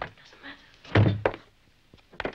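Wooden door being pushed shut, closing with a heavy thud about a second in and a lighter knock just after.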